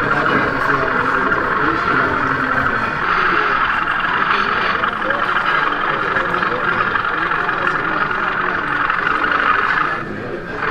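Steady hubbub of many people talking in a busy exhibition hall, with no single voice standing out.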